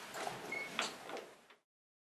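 A bedroom door being opened by its lever handle: several clicks and rubbing knocks with one brief high squeak. The sound cuts off abruptly to dead silence about a second and a half in.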